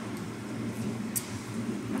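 Steady low hum of room tone picked up on an open studio microphone, with a faint click about a second in.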